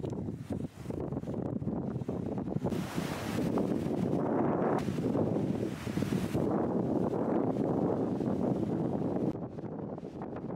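Wind buffeting the microphone over ocean surf breaking on a sandy beach, with louder washes of surf between about three and six and a half seconds in.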